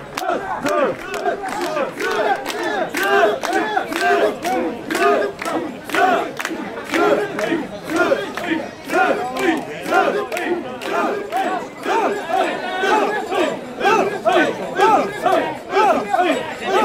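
Many male mikoshi bearers shouting a rhythmic carrying chant together, short calls repeating in a steady beat as they shoulder and bounce the portable shrine. Sharp clicks run through the chanting.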